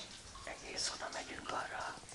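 A person whispering softly, starting about half a second in.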